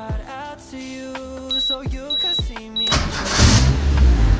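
Toyota AE86 Levin's 4A-GE twin-cam four-cylinder engine starting up about three seconds in with a sudden loud burst, then running at a fast idle, over background music.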